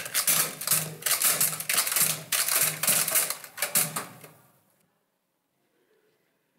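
Typewriter-style clacking over a pulsing low tone: a news-style sting closing an announcement segment. It fades out about four and a half seconds in.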